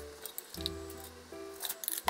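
Background music with long held notes, over the soft wet sound of beaten egg being poured from a bowl into a frying pan lined with aluminium foil.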